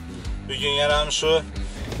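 A man's voice, with music and a steady low car hum beneath.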